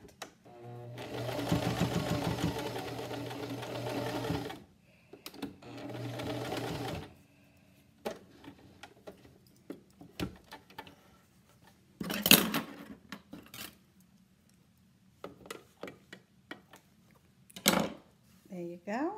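Electric sewing machine stitching a seam through layered cloth, in two runs: one of about four seconds, then a shorter one, before it stops. After that come light scattered clicks and one short louder noise.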